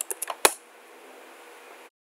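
A few computer keyboard keystrokes, the last and loudest about half a second in: the password being typed and entered at a login prompt. Then faint hiss until the sound cuts off just before the end.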